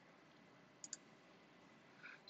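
Two quick clicks of a computer mouse button, close together about a second in, against near silence.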